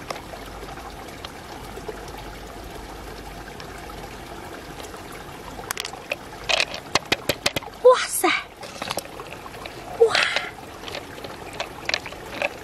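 Wet squelching and clicking as fingers work through the soft flesh of an opened freshwater mussel, searching for pearls. It is quiet for the first half, then comes a run of sharp wet clicks, with louder squelches about eight and ten seconds in.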